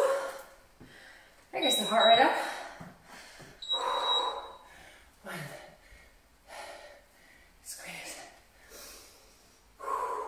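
A woman breathing hard during squat pulses: two louder voiced exhales in the first half, then shorter puffs of breath about once a second.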